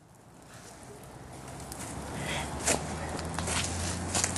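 Outdoor woodland sound fading in from silence and growing louder: footsteps rustling through dry leaves, with a few sharp snaps and a steady low hum underneath.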